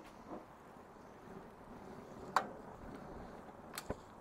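Quiet outdoor background with a single sharp click about two and a half seconds in and two quick clicks near the end.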